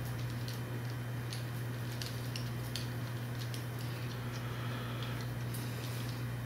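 A steady low hum throughout, with scattered faint clicks and ticks of small metal steam-port adapters being handled and threaded by hand into the cylinder heads.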